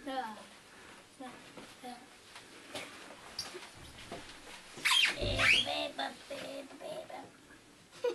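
Quiet talk in a small room, broken about five seconds in by a child's brief, high-pitched squeaky squeal that slides sharply in pitch, followed by a few low voice sounds.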